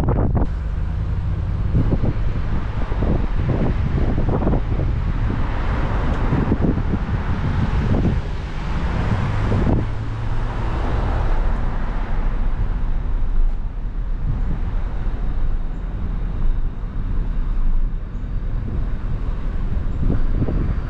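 Road traffic passing alongside, with one vehicle swelling and fading during the first half, over wind rumbling on the microphone.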